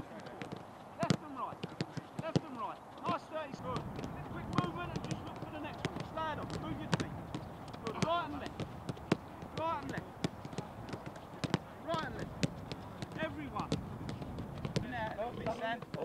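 Footballs being struck back and forth in a passing drill: repeated sharp thuds of boots on balls at irregular intervals, with voices calling across the pitch.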